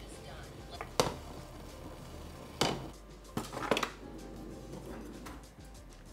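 A few sharp clatters of kitchen ware, one about a second in, another midway and a short cluster just after, over a quiet room.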